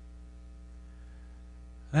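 Steady electrical hum, a stack of even, unchanging tones with a low drone beneath. A man's voice starts right at the very end.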